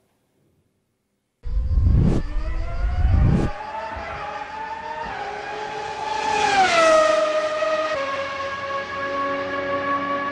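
Race car engine sound effect. After a second and a half of silence it starts loud with a couple of heavy thumps, then the engine note drops in pitch as the car passes by and settles into a steady tone.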